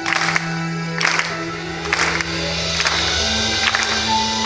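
A heavy metal band playing live in a slow passage: sustained held chords and bass notes under drum and cymbal hits about once a second.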